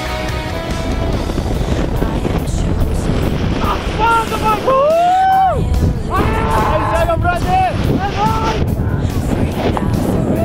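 Freefall wind rushing over the camera microphone during a tandem skydive. From about four seconds in, a skydiver gives several long, rising-and-falling yells of excitement over the wind.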